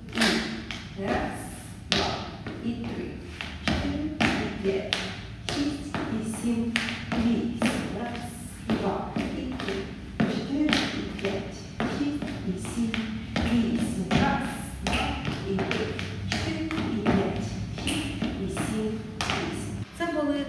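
A run of rhythmic taps and thuds, about two a second, from a dancer's sneakers stepping on a wooden floor while she practises a solo jazz step.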